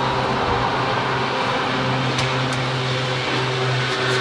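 Steady mechanical hum with a constant low drone and an even rushing noise, unchanging in pitch and level.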